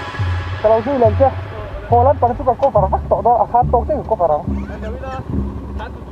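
People talking in short bursts over a low, uneven rumble, with the tail of background music at the very start.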